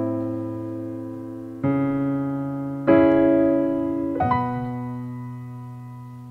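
Piano chords, each struck and left to ring and fade: new chords come about one and a half and three seconds in, then about four seconds in a quick rising B major chord (B, D sharp, F sharp, B) that rings on to the end.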